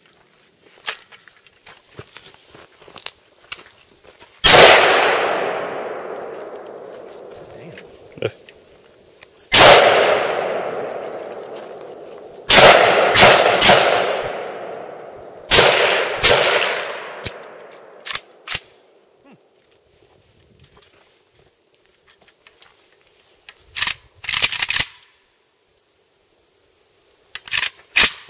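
Vector Arms AK-47 underfolder rifle (7.62×39) firing single shots, at first several seconds apart and then in quicker succession, each followed by a long, fading echo. A short cluster of quieter sharp sounds comes near the end. The rifle is cycling without a hitch: it apparently runs good.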